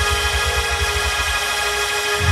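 Hammond organ holding a sustained chord over a rapidly pulsing low bass.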